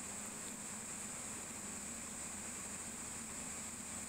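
Steady faint hiss of room tone with a faint low hum, with no other event.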